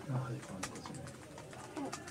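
A brief low hummed murmur from a person near the start, then a few faint light clicks, with scattered quiet vocal sounds in a small room.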